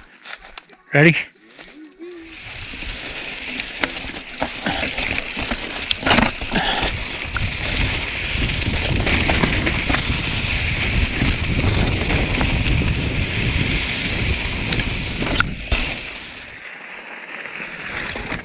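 Mountain bike rolling fast down a dry, loose dirt trail: a steady rush of tyre and ride noise with a few sharp knocks as the bike hits bumps. It quietens about two seconds before the end as the bike slows.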